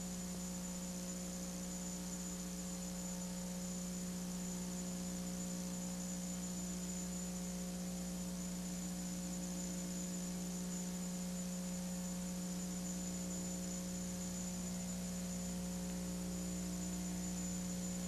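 Steady electrical mains hum, a low buzz with a faint high whine above it, unchanging throughout.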